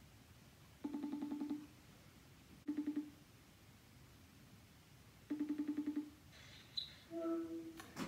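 FaceTime outgoing-call ringing tone from an iPhone's speaker: a warbling, pulsing tone heard three times while the call rings out, then a different short chime near the end as the call is answered.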